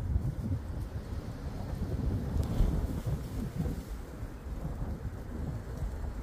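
Strong wind buffeting the microphone: a gusty low rumble that rises and falls unevenly.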